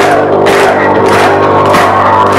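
Live metal band playing loudly: sustained chords with drum hits about twice a second.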